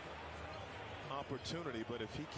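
Faint basketball broadcast audio, well below the reactor's voice: low arena ambience, with a faint voice coming in about a second in.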